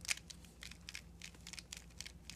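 A 3x3 speedcube's layers being turned rapidly by hand, a quick irregular run of plastic clicks and clacks as an algorithm is executed.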